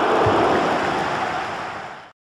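A steady, loud rushing noise from the logo intro's sound effect, with a faint low thump about a quarter second in, fading out near the end.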